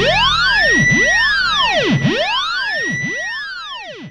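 An electronic tone that sweeps up and down in pitch, like a siren, about once a second, with several overlapping layers. It fades away near the end as the band's playing drops out.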